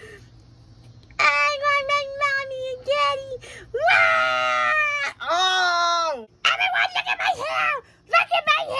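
A high-pitched voice wailing and screaming without words, in several long, drawn-out cries that rise and fall. It starts about a second in, and the loudest cry comes about four seconds in.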